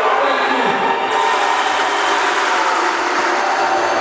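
Loud, steady crowd noise in a hall: many people cheering and shouting at once.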